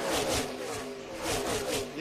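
A pack of NASCAR Xfinity Series stock cars' V8 engines running at racing speed past the trackside microphones, the engine note drifting slightly downward as they go by.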